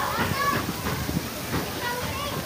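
Background chatter and calls of children playing, many short overlapping voices, over a steady hiss.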